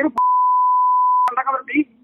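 A steady single-pitch beep at about 1 kHz, lasting about a second and starting and stopping abruptly in the middle of speech, typical of a censor bleep laid over a word. Speech resumes right after it.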